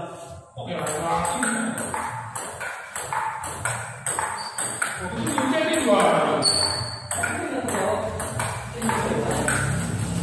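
Table tennis rally: a plastic ball clicking off the paddles and the table in a quick, steady run of hits.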